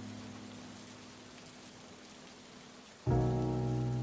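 Steady rain hiss under a slowed-down song: a held low chord fades away over the first couple of seconds, leaving mostly rain, then a new chord comes in loudly about three seconds in.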